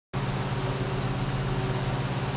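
Steady, unchanging mechanical hum with a constant low drone and an even hiss beneath it.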